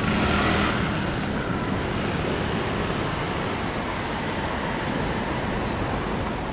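A car driving past close by, loudest in about the first second, over steady road-traffic noise.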